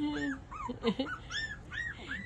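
Puppies whimpering: a string of short, high squeaks that rise and fall, about three or four a second.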